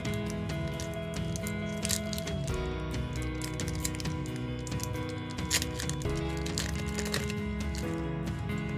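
Background music of sustained, slowly changing chords, with a few sharp crackles as a foil booster pack is handled and opened and cards are pulled out.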